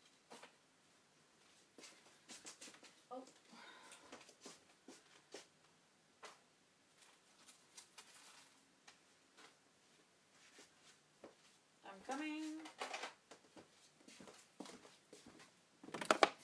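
Quiet handling of craft supplies on a table: scattered small clicks and taps. A woman's voice makes two brief murmured sounds, about three seconds in and again louder about three quarters of the way through.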